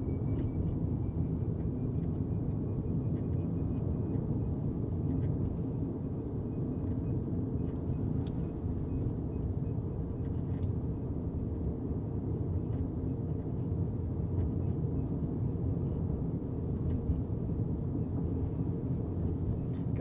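Steady low road and tyre rumble inside the cabin of an electric Tesla Cybertruck cruising at about 35 mph.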